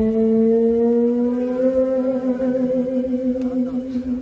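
A woman singing one long held note live into a microphone, sliding up into it at the start, with vibrato setting in about halfway through.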